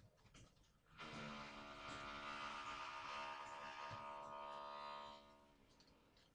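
A steady buzzing hum at one fixed pitch comes in about a second in and lasts about four seconds before fading out.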